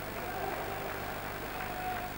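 Steady ambience of an indoor pool hall during water polo play, heard through an old broadcast recording: an even hiss with a faint steady tone running through it.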